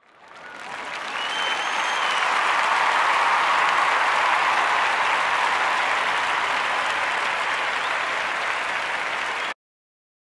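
Crowd applauding, fading in over the first second or so, holding steady, then cutting off suddenly near the end.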